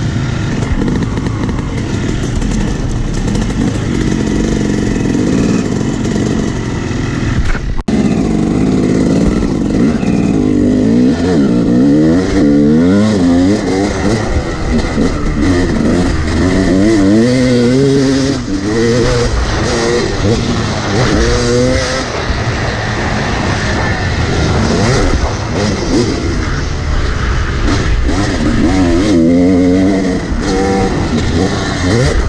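Yamaha YZ250 two-stroke dirt bike engine revving up and down again and again as it is ridden hard around a motocross track, heard close up from the rider's position. The sound briefly drops out about eight seconds in.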